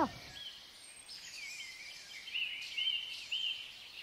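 Small birds chirping outdoors: a run of short repeated chirps, about two a second, in the middle, over a faint steady background hiss.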